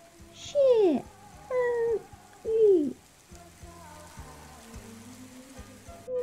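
A voice reciting slowly in three long, drawn-out syllables with falling pitch, over soft background music that carries on alone through the second half.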